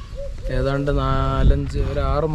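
A man's voice speaking outdoors, drawing out one long vowel near the middle.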